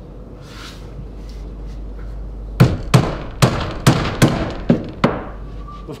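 Hammer striking a nail into timber: about seven quick, evenly spaced strikes, starting about halfway through.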